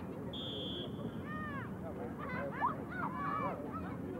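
A referee's whistle blown once, a single steady high note lasting under a second, shortly after the start. High-pitched shouts from voices at the game follow in the second half, over a steady background din.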